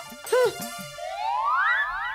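Comic sound effect: from about a second in, a quick run of rising whooping glides, one after another, several a second.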